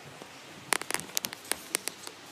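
Phone handling noise: a quick run of sharp clicks and rustles, starting just under a second in, as skin and fingers brush and tap close to the phone's microphone.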